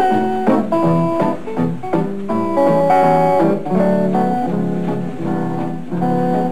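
Hollow-body electric guitar played solo: a melody of single picked notes, several a second, over a ringing bass line.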